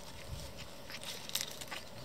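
A baby pine marten eating from a paper plate: a few small, sharp chewing clicks.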